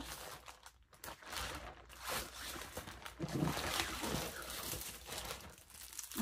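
Plastic mailer bag crinkling and rustling irregularly as it is opened and a plastic-wrapped item is pulled out of it.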